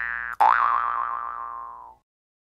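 Cartoon spring 'boing' sound effect, heard twice. A short rising boing is followed, about half a second in, by a second one that rises, wavers in pitch and fades out over about a second and a half.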